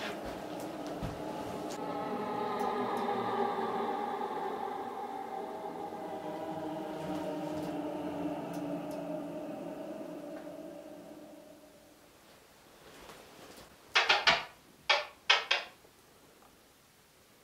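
A sustained drone of several steady tones, fading out over about twelve seconds, followed by four loud short noises in quick succession near the end.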